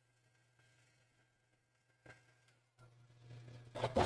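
Near silence with a faint low hum for most of the span, then rustling and knocking handling noise building near the end, with one brief louder knock just before it ends.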